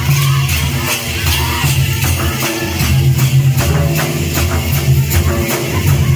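Live folk dance drumming: barrel drums beaten in a steady, even rhythm of several strikes a second over a continuous low drone.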